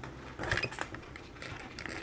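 Small Phillips screwdriver turning a tiny screw into a 3D-printed plastic chassis: a few light clicks and scrapes, busiest about half a second in, then fainter ticks.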